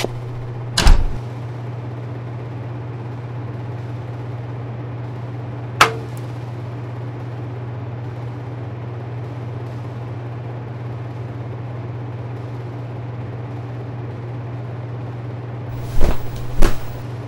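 A steady low hum, with a heavy thump about a second in and a sharp knock near six seconds.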